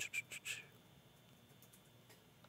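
About four quick computer mouse clicks in the first half second, as a video is tried on a presentation slide, followed by faint steady room noise.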